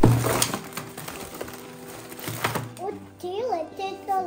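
Candy, cards and plastic-wrapped little gifts tipped out of a cardboard box onto a wooden table: a sudden rustling clatter at the start that dies away, with a couple of knocks. About three seconds in a child starts talking, over background music.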